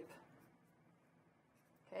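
Near silence: faint room tone between spoken words.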